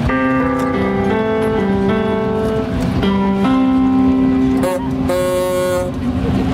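Live music played on a wheeled upright piano: held chords that change about every second, with a brief wavering note near the end.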